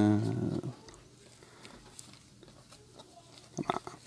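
A man's laugh trailing off in the first half-second or so. After it come faint clicks and rustles of trading cards being handled and flipped through, with a few sharper clicks near the end.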